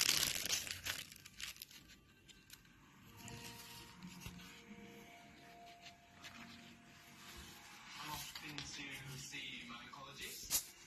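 Paper pages of a handmade journal being turned and handled, rustling and crinkling, loudest in the first second.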